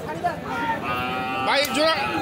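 A cow at a cattle market mooing: one long moo starting about a second in and loudest near the end, over the chatter of the market crowd.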